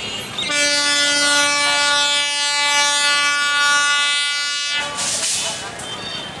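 Diesel locomotive's horn sounding one long, steady blast of about four seconds, starting half a second in, as the train approaches. A short burst of noise follows just after it stops.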